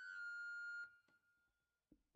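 A single faint high steady tone with overtones, dipping slightly in pitch, held for about a second and then fading away; two faint knocks follow near the end.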